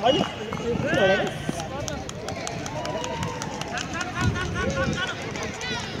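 Football players shouting to each other across an outdoor hard court, with running footsteps and sharp clicks scattered through the second half.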